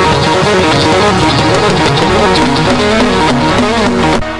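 Live church band playing loud, full music led by strummed electric guitar.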